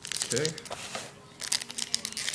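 Crinkling and crackling of a black plastic trading-card pack wrapper being handled and pulled open, in a run of quick sharp rustles.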